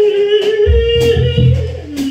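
Free-improvised live music: a woman's operatic voice holds one long, slightly wavering note, with electric bass notes coming in about a third of the way through and a few scattered drum hits.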